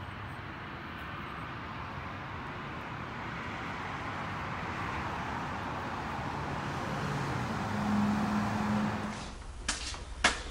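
Distant road traffic: a steady hiss that grows slowly louder, with a vehicle's hum swelling near the end. Then a few short knocks.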